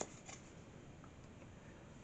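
A short click of a tarot card being set down on the cloth at the start, with a fainter tick just after, then near silence.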